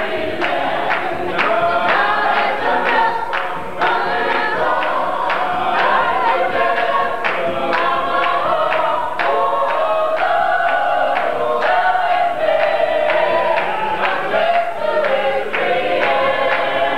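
Church choir singing a gospel hymn, with a steady beat of sharp strikes keeping time under the voices.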